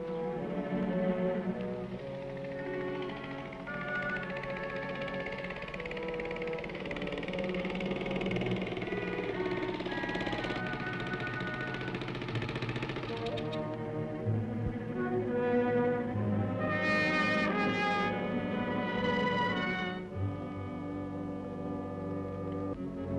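Orchestral film score, with sustained brass and strings moving through slow, changing chords. The brass swells fuller about three-quarters of the way through.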